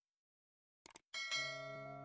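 A short mouse-click sound effect about a second in, then a bell chime that rings out and slowly fades: the click-and-bell sound effects of a subscribe-button animation.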